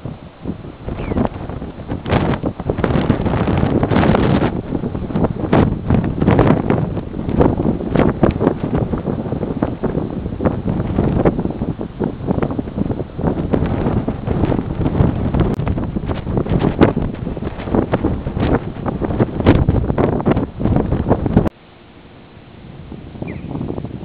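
Wind buffeting the camera microphone in loud, uneven gusts. It drops suddenly to a much quieter hiss near the end.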